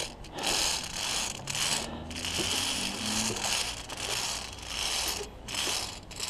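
Via ferrata lanyard carabiners sliding and rattling along the steel safety cable: a run of uneven metallic scrapes with short gaps between them.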